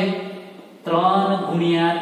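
A man's voice speaking in a slow, drawn-out, sing-song way, as when reading numbers aloud. It pauses briefly and resumes about a second in.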